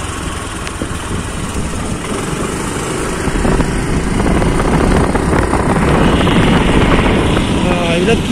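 Loud, steady rushing noise of a moving vehicle, wind on the microphone mixed with engine noise, growing a little louder in the second half.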